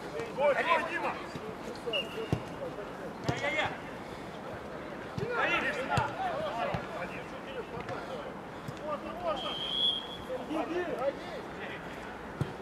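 Footballers shouting to one another during play, with a few sharp thuds of the ball being kicked.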